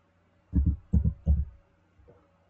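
Three dull, low thumps about 0.4 s apart: keystrokes on a computer keyboard typing a short search word.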